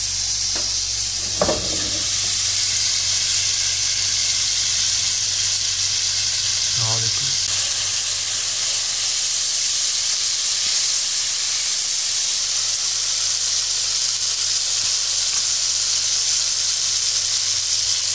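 Chopped onions and tomatoes frying in hot oil in a pan on a high flame, a steady loud sizzle, while a wooden spatula stirs the masala as the tomatoes cook down. A single knock sounds about one and a half seconds in.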